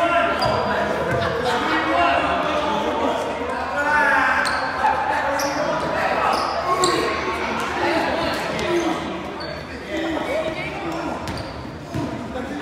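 Echoing gym: a basketball bouncing several times on the hardwood floor amid indistinct talking and calling out from players and onlookers.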